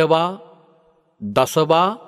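Speech only: a Buddhist monk's male voice preaching, in two drawn-out phrases, each trailing off slowly.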